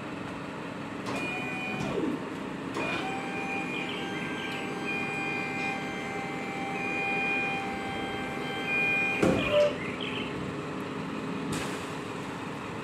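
A truck's hydraulic tail-lift raising its platform with a load: a steady pump-motor whine from about three seconds in, cut off with a clunk near the end as the platform stops at bed height.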